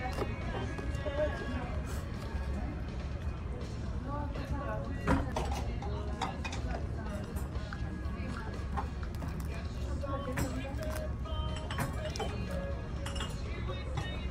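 Background music over a steady low hum and indistinct chatter, with occasional short clicks and knocks of tableware, the sharpest about five seconds in.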